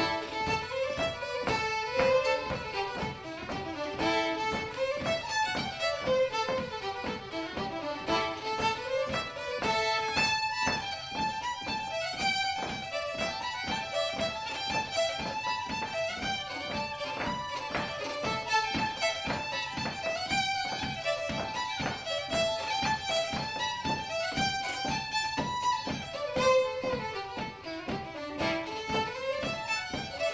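Two fiddles playing a quick Irish traditional tune, with a steady run of fast notes.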